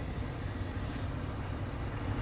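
Steady low drone of an idling engine, with no distinct squeak standing out.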